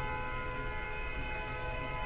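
Steady low rumble of a car heard from inside, with a faint steady hum of several thin tones over it.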